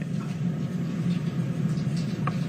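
Courtroom room tone: a steady low rumble of background noise on the court's audio feed, with no one speaking.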